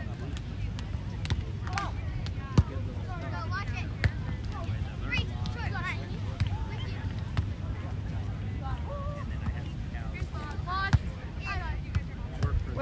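Beach volleyball rally: a few sharp slaps of hands and arms on the ball, the loudest about two and a half seconds in, more near four seconds and near the end. Behind them are scattered calls and chatter from players and spectators, over a steady low background rumble.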